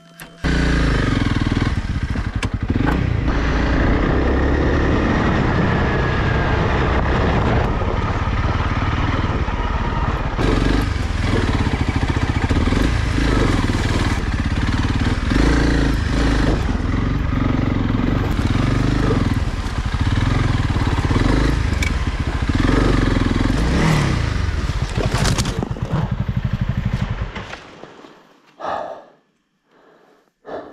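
Honda CRF300 Rally's single-cylinder engine pulling the bike up a rocky trail, its revs rising and falling over the rocks, with many short knocks and rattles. Near the end the engine sound cuts off as the bike goes down in a crash, followed by two short sounds.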